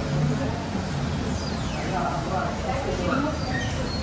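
Indistinct, distant voices murmuring over a steady low rumble of background noise.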